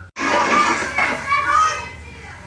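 Children in a classroom shouting and chattering over one another, starting abruptly after a cut and dying down near the end.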